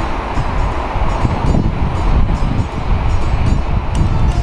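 Wind buffeting the microphone in a loud, gusty low rumble, over the wash of surf running up the beach.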